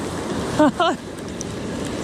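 Surf washing up a sandy beach as a steady rush, with wind on the microphone. A man's voice gives a brief two-syllable exclamation a little over half a second in.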